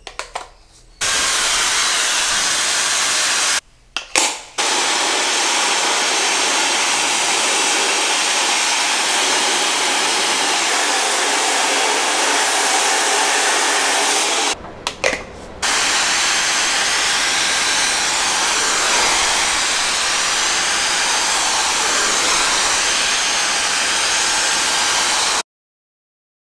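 Dyson Supersonic hair dryer blowing, a loud steady rush of air with most of its energy high in pitch. It breaks off briefly twice and cuts off suddenly near the end.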